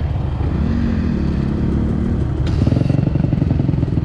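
Dirt bike engine running close by, its firing pulses growing louder and choppier about two and a half seconds in, just after a brief rush of noise.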